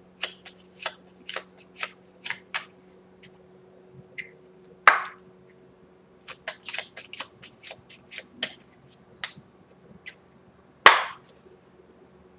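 A deck of playing cards being shuffled by hand: an irregular run of short flicks and snaps of cards, with two louder slaps about five seconds in and near the end.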